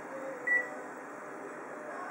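One short, high key beep from a photocopier's touchscreen control panel about half a second in, as a key is pressed to step the black level up. A steady hum runs underneath.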